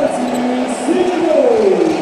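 A voice calling out in long, drawn-out tones that glide up and then fall, over the steady background noise of an indoor basketball arena, as a basket is scored.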